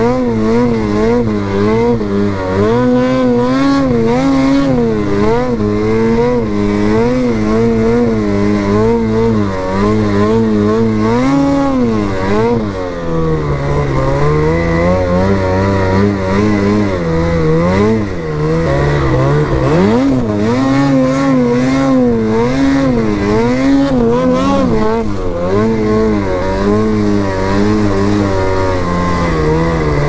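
Lynx Boondocker snowmobile's two-stroke engine revving up and down continuously under throttle as it is ridden through deep powder. The pitch keeps rising and falling every second or so, with a deeper dip and a quick climb about twenty seconds in.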